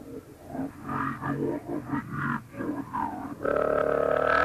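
A voice making short wordless grunting sounds, several in a row, then a louder, longer one starting near the end.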